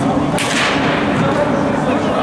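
A quick whoosh, a sweep of noise that falls in pitch, about half a second in: a transition sound effect in an edited highlight reel. It sits over a steady hubbub of voices in an indoor sports hall.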